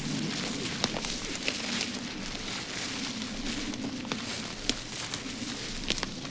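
Footsteps through dry forest floor, with irregular snaps and crackles like twigs breaking underfoot, over a low wavering hum.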